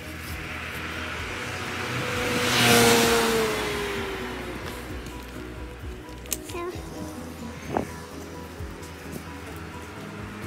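A car passes on the road: its tyre and engine noise swells to a peak about three seconds in, then fades with a falling pitch. Steady background music plays under it.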